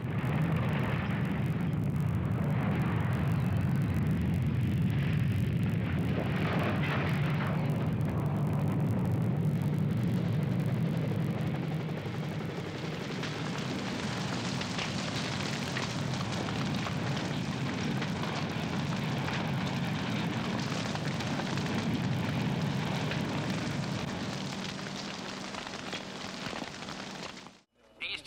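Continuous low rumbling with crackling noise, loudest for the first dozen seconds, then thinner and more crackly until it cuts off just before the end.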